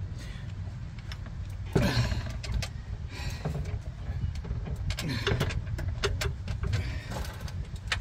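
Folded fat-tire e-bike being heaved into an RV's carpeted storage bay: scattered metal clunks and rattles of the frame, chain and parts, the loudest knock about two seconds in, over a steady low rumble.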